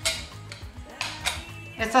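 Background music with a few sharp clinks and knocks as a metal mason-jar lid is handled and set down on a wooden cutting board and a wooden spoon is picked up.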